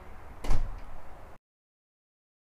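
A single loud thump about half a second in, with a brief rustling tail, then the sound cuts off to dead silence.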